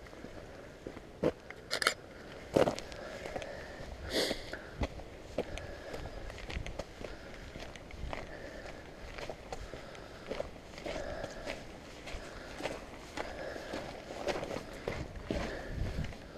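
Footsteps walking on a wet, muddy, gravelly track: a steady run of irregular crunches and scuffs, a few louder ones in the first few seconds.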